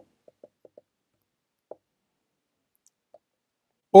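Mostly near silence with a few faint, short key clicks from an iPad's on-screen keyboard as text is typed: four quick ones in the first second, then single ones near two and three seconds in.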